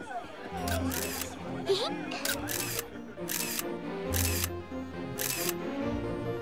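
Film soundtrack music with sustained notes, cut through by about seven short, sharp noise bursts roughly once a second. Brief voice sounds come in the first two seconds.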